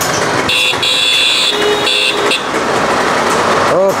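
Old Honda motorcycle's small engine running at idle with its exhaust noise, while a vehicle horn beeps for about two seconds starting half a second in, briefly broken up.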